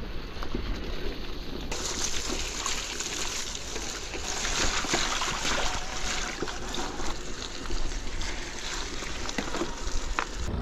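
Mountain bike tyres rolling over a wet, muddy dirt path, with a steady gritty crackle and the squelch and splash of mud and puddle water.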